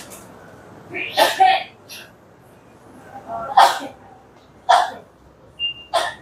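A person's voice in a few short, sharp outbursts, the loudest a double one about a second in, then others a couple of seconds apart. A brief high beep sounds near the end.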